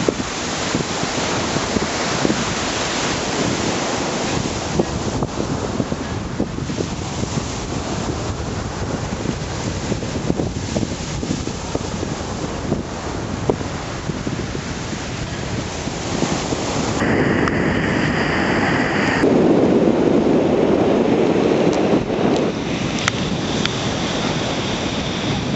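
Small Gulf of Mexico waves breaking and washing up the sand, with wind rumbling on the microphone. Near the end the noise swells louder for a few seconds, just after a faint steady high tone.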